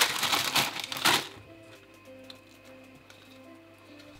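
Wax paper rustling and crinkling for about the first second as it is handled over a sheet of rolled dough, then soft background music.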